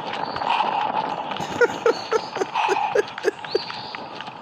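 Footsteps of a person running fast on a path, with quick voiced panting breaths, about three a second, starting about a second and a half in.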